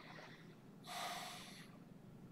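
One short breath through the nose, lasting under a second, over faint room tone.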